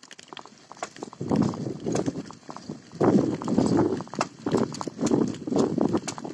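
A bicycle rattling and its tyres crunching over a rough, rutted dirt path: a run of irregular sharp clicks and knocks, with three rougher surges of noise as the bike hits bumpy stretches.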